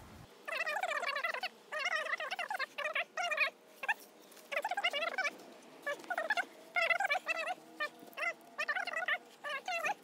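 A bird calling over and over, in short warbling pitched calls of under a second each, spread through the whole stretch.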